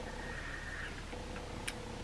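Quiet room tone: a faint steady hum with thin high and low tones, and one soft click near the end.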